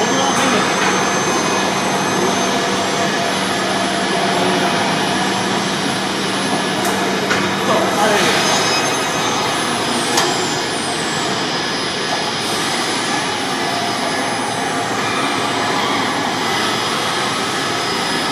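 Automated pallet stacker and warehouse machinery running: a steady, loud machine noise with a low hum that stops about eight seconds in, and a few sharp clicks and short high chirps in the second half.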